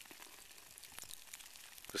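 Faint crackling and scattered ticks from a pāhoehoe lava flow's cooling crust, the sound of the solid rock cracking and shifting as molten lava pushes beneath it.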